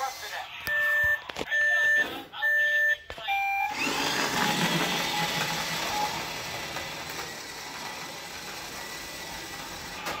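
Electronic sound effect from a battery-powered toy race car's speaker: three steady beeps followed by one higher beep, like a race-start countdown, then a long rushing sound that slowly fades.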